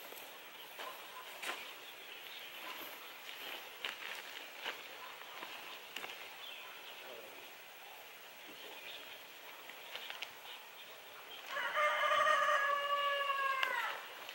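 A rooster crows once near the end, a single call of about two and a half seconds that drops in pitch as it ends. Before it there is only faint outdoor background with a few light ticks.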